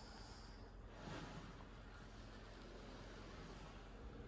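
Near silence: a faint, steady hiss with a slight swell about a second in.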